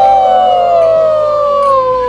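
People cheering in a toast, one high voice holding a long "woo" whoop that slides slowly down in pitch and breaks off at about two seconds.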